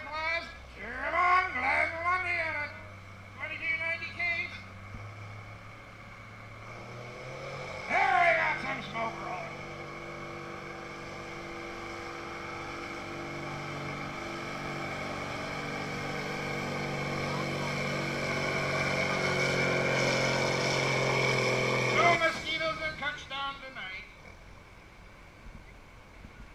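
Antique tractor's engine working under full load as it pulls the weight-transfer sled, rising steadily in pitch and loudness for about fifteen seconds, then cutting out abruptly near the end of the run.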